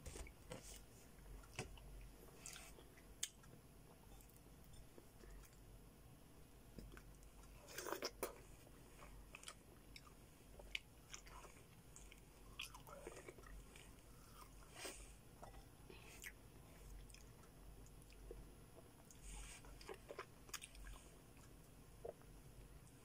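Someone eating slices of melon: quiet, wet biting and chewing with small mouth clicks, and a few brief louder bites, the loudest about eight seconds in.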